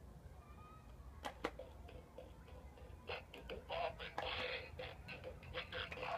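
Bop It Extreme 2 handheld toy starting a game on a low battery: two clicks, then from about three seconds in a run of short electronic sound effects and beat sounds from its small speaker.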